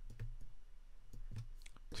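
Faint, irregular clicks and taps of a stylus on a tablet screen during handwriting, over a low hum.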